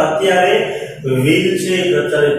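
Speech only: a man lecturing in a steady, sing-song voice, with a short pause about halfway through.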